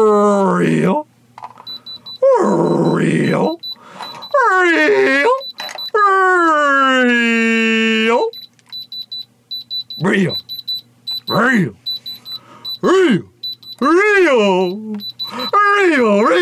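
An electronic diamond tester pen beeping in rapid short pulses, its alert for a "real" diamond reading, between a man's long, wavering shouts of "real".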